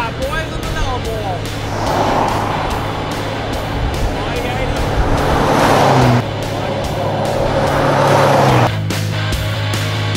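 Four-wheel-drive vehicles driving past on a sealed highway, heard as three swells of engine and tyre noise; the second and third cut off suddenly, about six and eight and a half seconds in. Rock music with a steady beat plays under them.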